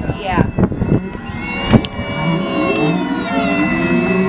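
Humpback whale song picked up by a hydrophone: a run of rising and falling tones, some low and some high, overlapping one another. A single sharp click is heard a little before the middle.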